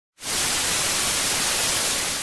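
Television static hiss, a steady rush of white noise that switches on sharply just after the start.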